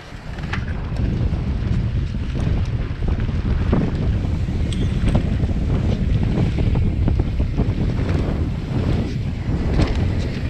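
Wind buffeting a GoPro's microphone as a mountain bike rolls fast down a dirt singletrack, with tyre rumble and scattered clicks and rattles from the bike. It builds up within the first second as the bike gets going, then stays loud.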